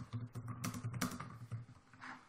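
Typing on a computer keyboard: a quick, uneven run of keystrokes as a line of text is entered.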